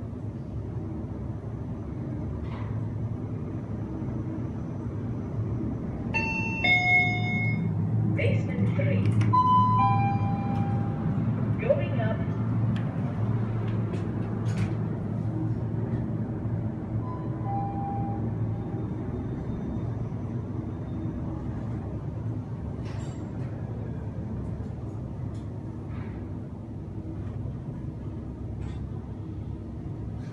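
Lift car running with a steady low hum inside the car. A falling two-note 'ding-dong' chime sounds twice, about six and ten seconds in, and more faintly once more near eighteen seconds, with a few light clicks along the way.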